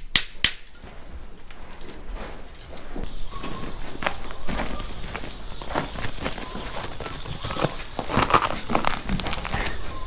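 Footsteps and the handling of a rubber garden hose being coiled and carried: irregular clicks and rustles, busier from about three seconds in, with two sharp clicks right at the start.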